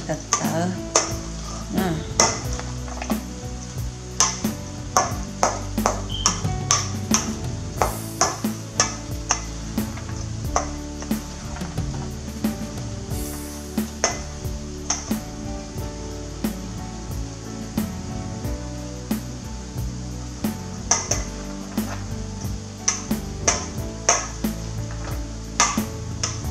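White plastic rice paddle scraping and knocking against a stainless steel bowl as steamed sticky rice and corn are turned over. It makes irregular clicks and scrapes, about one or two a second, over background music.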